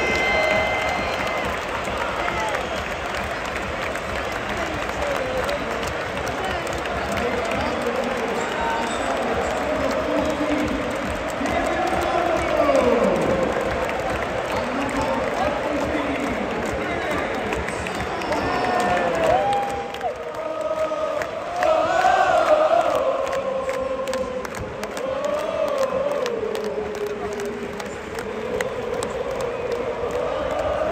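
A large crowd of football supporters singing and cheering, many voices chanting together.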